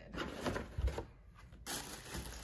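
A cardboard box lid being worked open by hand: rustling and scraping of cardboard, a soft bump a little under a second in, then a louder scrape near the end as the lid comes off.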